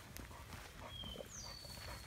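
Faint footsteps and rustling through tall grass and brush while walking a woodland trail, with two brief high-pitched chirps, one about a second in and a thinner one near the end.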